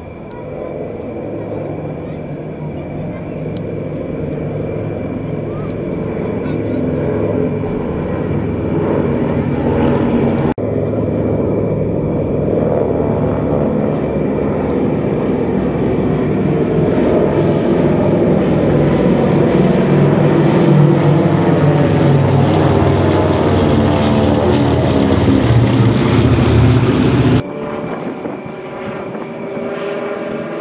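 Vintage twin-engine piston propeller aircraft in formation, a Douglas DC-3 with three Beechcraft 18s, flying past with the drone of their radial engines. The sound builds steadily louder as they come overhead, and the engine pitch bends downward as they pass. It drops off suddenly near the end.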